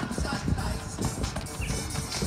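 Background music with melody, over the dull hoofbeats of a horse landing after a jump and cantering on sand.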